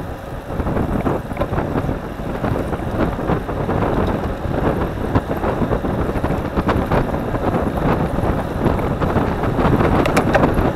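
Wind buffeting the microphone of a bike-mounted camera while riding at speed, with a steady rush of tyre and road noise and scattered small clicks and rattles.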